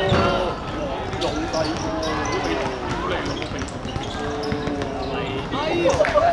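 Players' voices calling out across an outdoor court, with short knocks of a ball being kicked or bounced.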